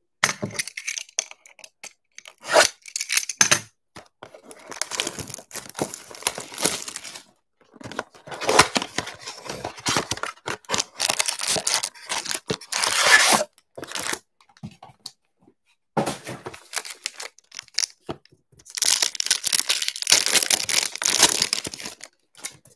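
A trading-card blaster box being torn open by hand: a few clicks of handling, then several long rounds of tearing and rustling packaging. Near the end a foil card pack is crinkled and ripped open.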